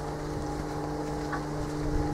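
A motor running steadily with an even, low hum.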